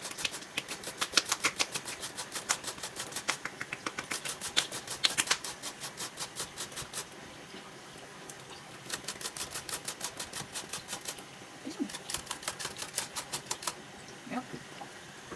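Vegetables being grated on a stainless steel box grater: quick back-and-forth rasping strokes, about four or five a second, in runs broken by a pause partway through and a short one near the end.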